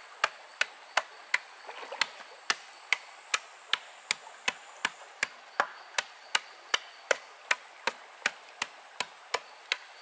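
Bamboo pole beating down a packed fill of wet gravel and soil, a steady run of sharp knocks about two and a half a second.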